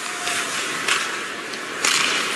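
Ice hockey arena sound: a steady wash of crowd noise with two short, sharp scrapes or clacks from the play on the ice, the louder one near the end.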